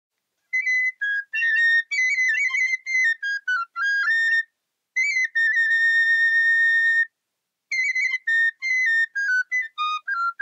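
Solo bamboo flute playing a slow melody in short phrases separated by pauses, with one long held note from about five to seven seconds in.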